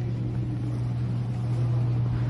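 Steady low hum of a large store's background noise, picked up on a phone recording.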